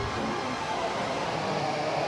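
A steady rushing noise with no clear pitch or beat, part of the album's electronic soundscape.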